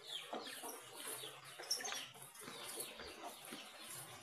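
Faint bird calls in the background: a few short chirps scattered through.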